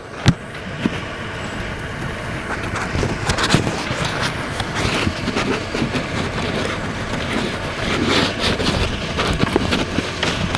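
Camcorder handling noise and footsteps on pavement as the person filming walks, a steady rustle with irregular knocks and a sharp bump just after the start.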